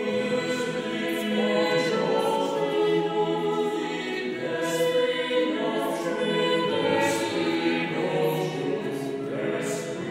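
Mixed chamber choir of sopranos, altos, tenors and basses singing a cappella, several voice parts holding and moving in overlapping lines, with sibilant consonants cutting through now and then.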